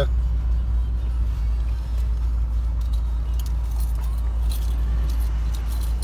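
Car engine and road noise heard from inside the cabin: a steady low drone as the car creeps forward, with a few faint light clicks or jingles in the middle.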